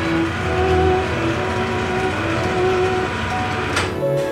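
Background music holding long, sustained notes over a steady low rumble, with a brief swish just before the end.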